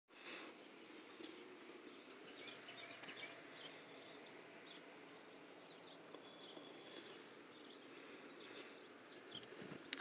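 Faint, scattered chirps of small birds over a quiet background hiss, with one brief, louder high note right at the start.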